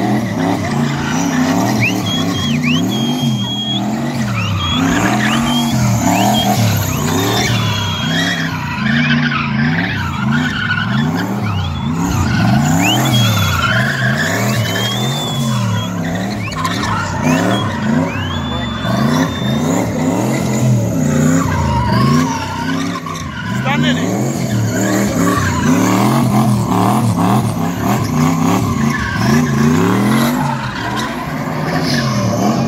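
A BMW E30 sedan's engine revving hard up and down about once a second as the car spins donuts on a spinning pad. Its rear tyres squeal and chirp in short bursts and hiss against the tarmac.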